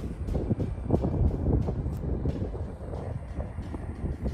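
Wind buffeting the microphone outdoors: an uneven low rumble that swells about a second in.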